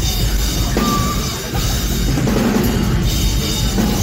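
Metalcore band playing live at full volume: distorted electric guitars and bass over a pounding drum kit with heavy bass drum.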